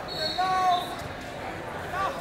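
Raised, indistinct voices of coaches and spectators shouting across a large hall, loudest about half a second in, with a dull thud about a second in.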